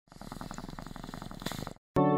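A fast, steady pulsing rumble, about ten pulses a second, that cuts off suddenly just before the music starts.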